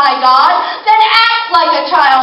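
A woman's voice singing, with held notes that slide up and down in pitch.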